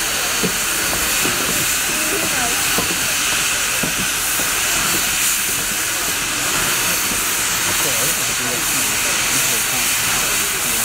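Western Maryland No. 734, a 2-8-0 steam locomotive, venting steam from the top of its boiler with a loud, steady hiss.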